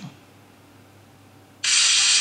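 Qumo 242 push-button mobile phone's power-on melody starting suddenly and loudly from its small speaker about one and a half seconds in, after a quiet stretch. The sound is thin and high, with little bass. It is a startup tune that plays at every switch-on and switch-off, and the owner could not find a way to turn it off.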